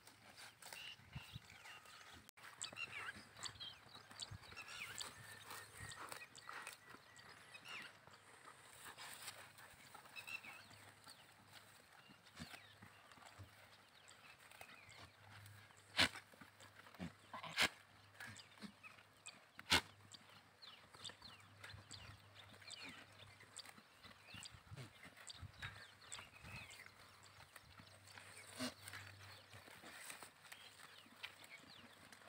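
Faint sounds of a grazing flock of sheep and goats, with short high chirps throughout. Three sharp clicks in the middle are the loudest sounds.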